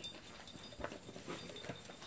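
A quiet lull: faint ambience with a few soft knocks, about a second apart.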